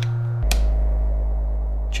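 An analog synthesizer oscillator holds a steady low note. About half a second in it drops with a click to a much lower note and holds it, showing a lower pitch.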